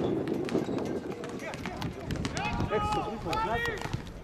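Footballers shouting and calling to each other during play, with scattered sharp knocks from ball kicks and footfalls on the pitch.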